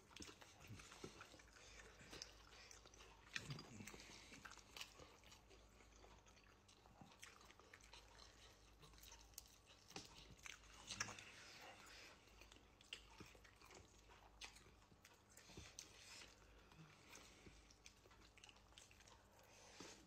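Faint chewing and eating sounds from someone eating grilled chicken and rice by hand: scattered small mouth clicks and smacks, with a couple of brief low hums.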